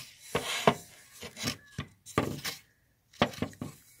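Rubbing and handling of a wooden machete handle: about four short scraping rubs roughly a second apart.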